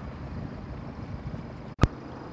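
Steady low rumble of outdoor background noise with no voice. Near the end the sound drops out for an instant and one sharp click follows, where the video is cut between two shots.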